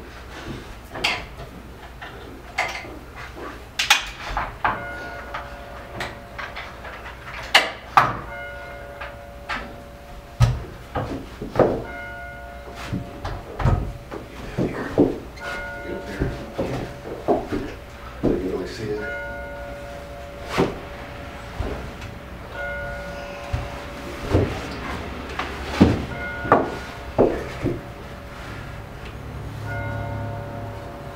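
Wooden knocks and clatter as the hinged wooden frame and rails of a folding bed are unfolded and handled, sharp knocks coming irregularly every second or so. From about five seconds in, a steady ringing tone sounds again and again in stretches of a second or two.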